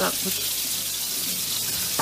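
Pork cubes sizzling steadily in oil in a frying pan.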